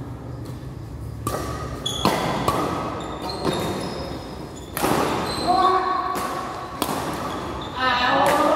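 Badminton rally in an echoing sports hall: sharp racket strikes on the shuttlecock about every second, with shoes squeaking on the court floor. Players' voices call out about five seconds in.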